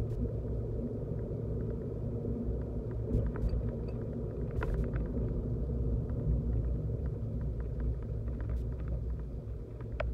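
A car driving, a steady low rumble of engine and tyres on the road, with a few light clicks and rattles scattered through it.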